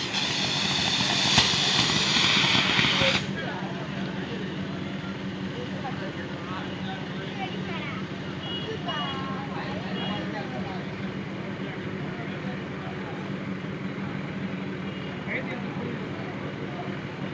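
A ground firework fountain spraying sparks with a loud, steady hiss for about three seconds, one sharp crack partway through, then cutting off suddenly. Crowd voices and a steady low hum follow.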